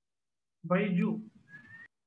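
A few words of speech over a video call, followed near the end by a faint, brief whistle-like tone that rises slightly in pitch.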